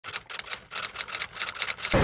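Typewriter keys clacking in a quick, uneven run, about eight to ten strikes a second: a typing sound effect for a date title card being typed on.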